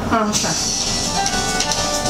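Short stretch of music from a mobile phone's small speaker, heard while a call is being placed, with a few steady tones over a bright hiss.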